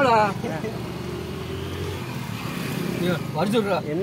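A motor vehicle's engine running steadily with a low hum, heard alone for about three seconds between bursts of men talking.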